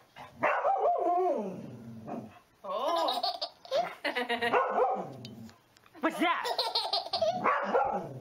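A baby laughing hard in three long bursts as a golden retriever runs back and forth past it, with a dog barking among the laughter.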